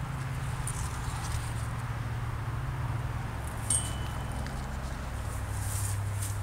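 A steady low hum with a faint hiss over it, dropping slightly in pitch about five seconds in, and a short click with a brief high tone about three and a half seconds in.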